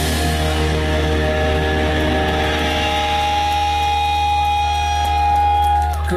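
A rock band's closing chord held and ringing out live, electric guitars and bass sustaining one steady chord, loud, until it cuts off abruptly at the very end.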